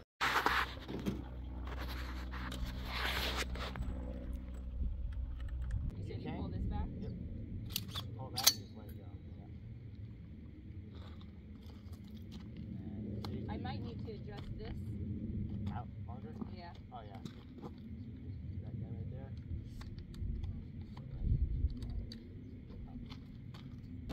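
Faint, indistinct voices over a low rumble of wind on the microphone, with two short sharp cracks about eight seconds in.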